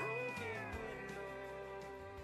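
Closing bars of a country song fading out, with a held note sliding down in pitch near the start.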